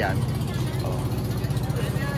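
A motor engine running steadily at low revs, an even low throb that continues without change.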